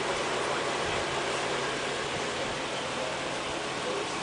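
Steady hiss of outdoor background noise with a faint low hum underneath; nothing sudden happens.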